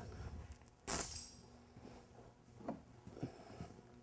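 A sharp metallic clink about a second in, as a metal tool or part is set down or knocked, followed by a few faint knocks.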